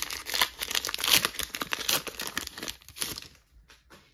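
Pokémon trading-card booster pack's foil wrapper crinkling and tearing as it is opened by hand: dense quick crackles that stop about three seconds in.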